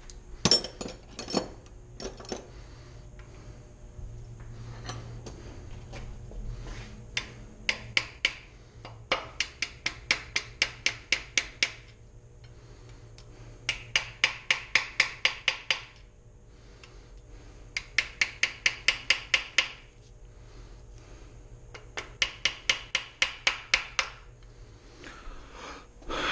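Rapid light hammer taps on the LQ4 engine block, metal ringing at about five strokes a second, in several runs of two to three seconds with short pauses between. A few scattered clanks of tools come first.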